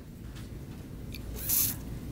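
Room background with a steady low rumble, a few faint clicks and one short hiss about one and a half seconds in.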